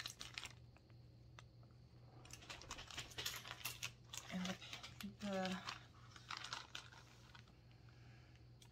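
Clear plastic zip bag crinkling and rustling as it is handled and turned over, in bursts at the start and again through the middle.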